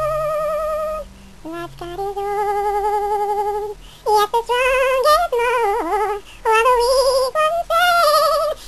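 A woman's solo voice singing long held notes with a wide, even vibrato, broken by short breaths, with a stretch of quick sliding notes in the middle.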